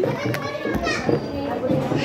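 Several people's voices talking over one another, with children's voices among them.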